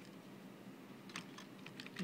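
Computer keyboard keys being typed: a quick run of faint, sharp keystrokes in the second half, entering a setting for the FPGA clock over the serial port.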